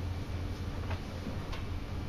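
Steady low hum with a couple of faint short ticks.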